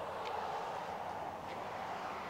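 Steady, fairly quiet outdoor background noise with two faint footsteps on pavement as a man walks.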